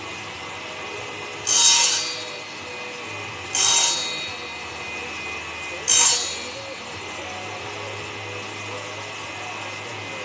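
A homemade table saw's circular blade keeps running with a steady hum. Three times it bites into a small piece of wood and cuts it. The cuts come about a second and a half in, at about three and a half seconds, and near six seconds. Each one starts sharply and fades over about a second.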